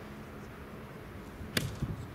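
A soft tennis racket striking the rubber ball once, a sharp crack about a second and a half in, followed by a fainter knock.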